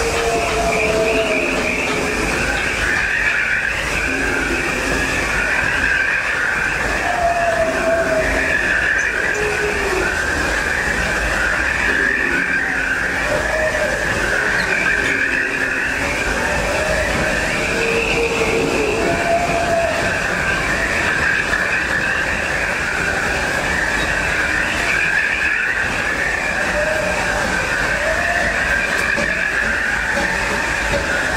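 The C.K. Holliday, a 4-4-0 steam locomotive, and its tender running along the track, heard from the tender: a steady rumble with a constant high squeal. Short gliding tones rise and fall every few seconds over it.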